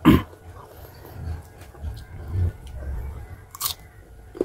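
Crunchy bites and chewing of unripe green mango: a loud sharp crunch right at the start, steady chewing, and another crisp bite near the end.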